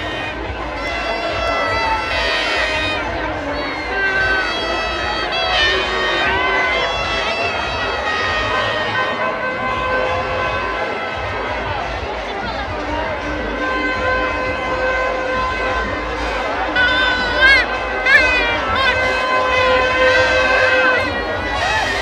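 Large crowd making a steady din of voices and shouts, with long held musical tones, like a wind instrument or horn, sounding over it. The shouting rises sharply twice near the end.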